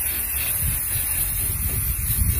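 Aerosol can of Rust-Oleum Army Green camouflage spray paint hissing steadily as the paint is sprayed on.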